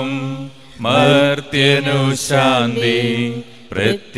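A man's voice chanting a Malayalam liturgical prayer on held, steady notes, with short breaths about half a second in and near the end.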